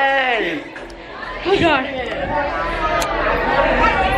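Several people's voices chattering and exclaiming, with no clear words; one voice slides down in pitch near the start.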